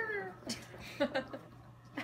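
A long pitched call that rises and falls trails off just after the start. Then a person laughs in a few short bursts.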